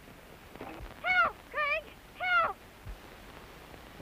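A high-pitched human voice calling out three times in quick succession, each call rising and then falling in pitch.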